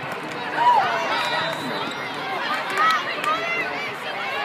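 Indoor volleyball rally: a jumble of players' calls and crowd chatter, with sneakers squeaking on the court and the sharp smack of the ball being hit.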